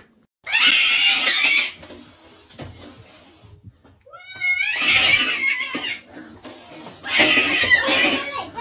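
A cat yowling and caterwauling at its own reflection in a mirror, a territorial challenge: three loud, harsh outbursts, about a second in, about four seconds in starting with a rising wail, and about seven seconds in.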